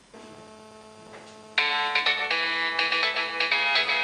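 Mobile phone ringtone on a Samsung flip phone: an incoming call. A melody of quick electronic notes starts softly and comes in loud about a second and a half in.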